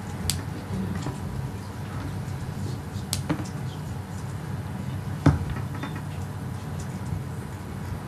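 A few sharp clicks and knocks over a steady low room hum: one just after the start, one about three seconds in, and a louder knock about five seconds in.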